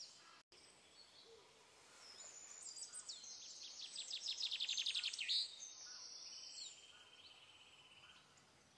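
Faint bird song: a quick series of high chirps, each sliding down in pitch, starting about two seconds in and ending in a short steady trill.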